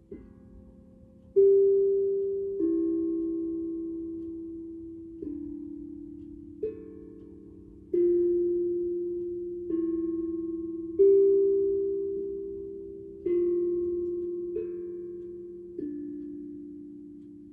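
Steel tongue drum struck with mallets, one slow note at a time, each ringing out and fading before the next. About a dozen notes at different pitches, a second or two apart.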